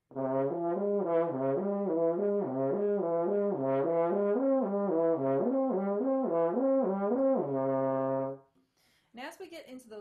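French horn playing a slurred lip-slur exercise on the first-and-third-valve fingering, moving up and down the notes of its natural arpeggio without breaks between notes, and ending on a held low note. The lower fingering makes the slurs trickier, and they call for a firm embouchure and a steady airstream.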